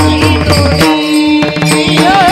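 Devotional kirtan music: voices singing to brass hand cymbals (taal) struck in a steady rhythm over a repeating low beat, with a note held steady near the middle.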